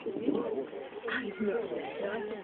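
Background chatter of people's voices with a soft cooing bird call mixed in, and a brief higher-pitched sound about a second in.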